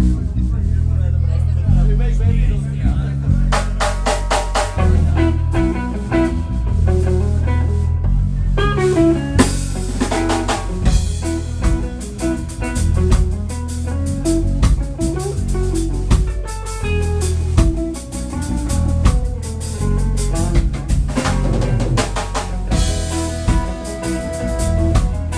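Live ska band playing loudly: electric bass and drum kit lay down a groove with electric guitar, and the horns, saxophone and trombones, come in about ten seconds in.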